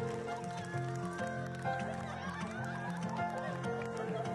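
Music: a repeating bass line under sustained notes, with light percussive ticks.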